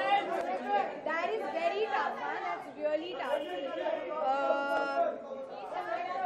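Several people talking at once: overlapping chatter of voices with no single clear speaker.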